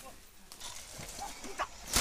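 Faint voices of riders on a trail, with scattered light knocks and rustling.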